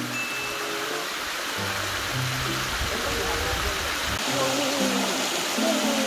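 Mountain stream water rushing steadily over a small rocky cascade, under light background music of held notes.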